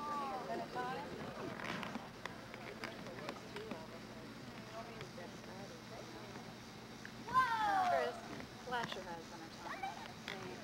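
Young children's voices calling out. The loudest is a long falling cry about seven seconds in, followed by a shorter call about a second later.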